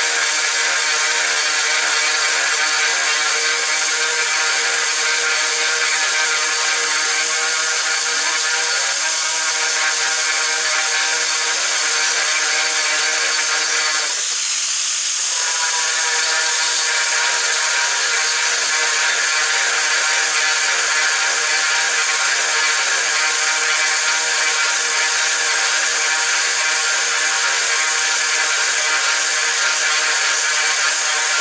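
Angle grinder running with an 8 mm dry drilling bit cutting into hard ceramic tile: a steady motor whine over grinding, which briefly breaks and shifts about halfway through.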